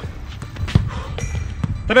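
A steady low rumble with a few faint, short knocks scattered through it.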